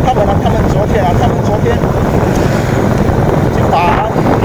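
Heavy wind buffeting the phone's microphone while moving along a road, over a low vehicle rumble.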